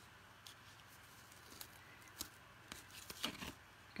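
Faint scattered taps and rustles of paper cards being handled, over quiet room hiss.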